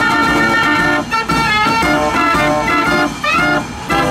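A 52-key Gasparini fairground organ plays a tune in full chords of pipe notes. The music breaks briefly between phrases and runs quickly up the scale near the end.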